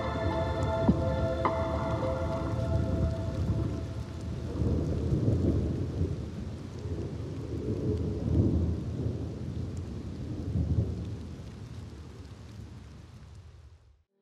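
Rain with low rolling thunder that swells several times, under synth chords that fade out in the first few seconds; the rain and thunder then fade to silence at the end.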